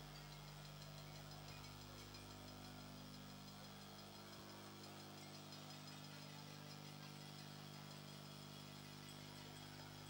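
Near silence: a faint, steady low hum and hiss, with no distinct sounds.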